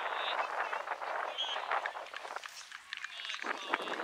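Indistinct, distant voices of players and spectators calling out across an outdoor soccer field, none of it clear speech.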